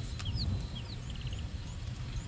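Wild birds calling: short high, downward-slurred chirps, with a quick run of about five notes a second in, over a steady low rumble.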